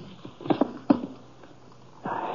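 Radio-drama sound effect of a wooden chair clattering over: a few sharp knocks, the two loudest about half a second and a second in, then quiet.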